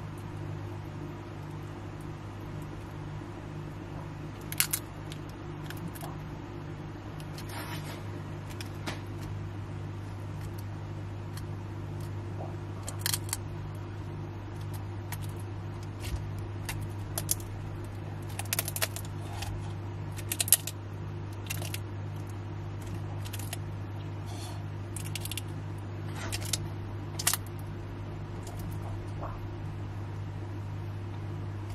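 Steady low mechanical hum, like a fan or pump, with a faint regular pulse, overlaid by scattered sharp clicks and ticks from about four seconds in, the loudest events.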